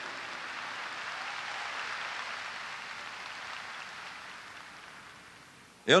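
Audience applauding, swelling briefly and then dying away over about five seconds.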